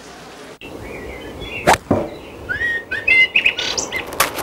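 Birds chirping, a string of short rising and falling calls through the second half, with two sharp knocks in quick succession about halfway through.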